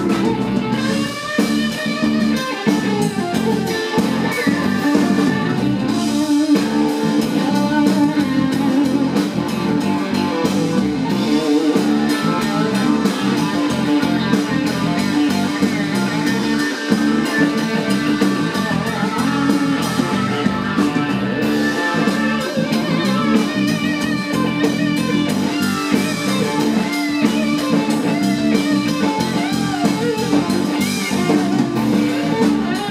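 Live blues-rock band playing an instrumental passage: lead electric guitar with bent, sliding notes over bass guitar and a drum kit.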